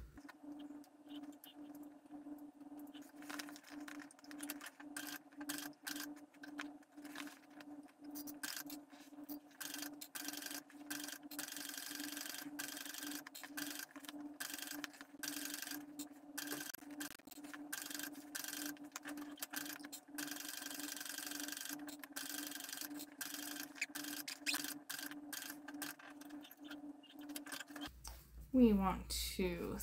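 Cylinder-arm sewing machine topstitching through the cork-fabric and lining layers of a tote bag: a steady motor hum under fast, continuous needle strokes. It runs more slowly for the first few seconds, then steadily.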